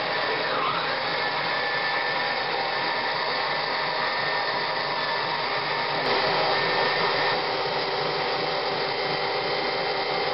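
Small electric food processor running, its motor giving a steady whine as the blade chops garlic cloves and fresh parsley in olive oil into a garlic sauce. A brief click comes about six seconds in.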